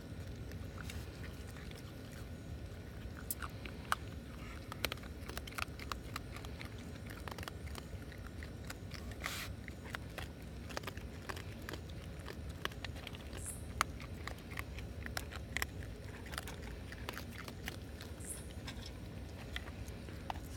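Baby raccoon eating dry kibble from a metal pan: a steady run of small, irregular crunches and clicks as it chews.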